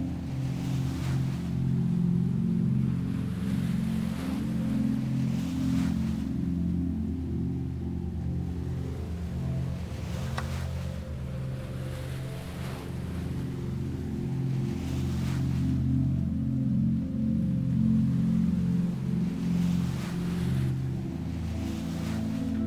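Ambient music of sustained, slowly shifting low drone chords, with soft sea-wave swells washing in every couple of seconds.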